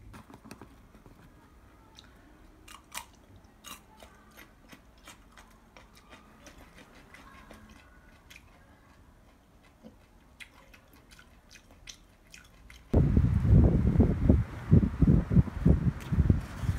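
Faint, scattered clicks and crunches of someone eating. Near the end, loud wind buffeting the microphone suddenly takes over.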